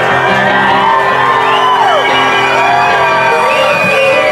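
Live rock band holding a sustained chord on amplified electric guitars while the crowd whoops and shouts over it. The held chord stops near the end and the crowd's cheering carries on.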